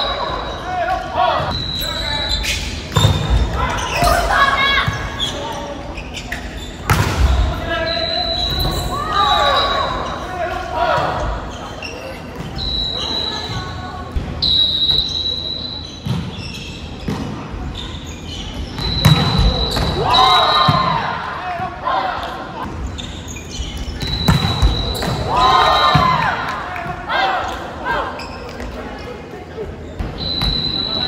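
Indoor volleyball being played: sharp hits of the ball against hands and the wooden floor, with players shouting between points. Everything echoes in a large gymnasium.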